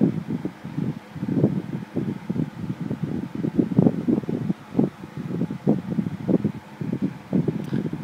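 Phone microphone handling noise: irregular rubbing and low bumps as the phone is moved about and handled.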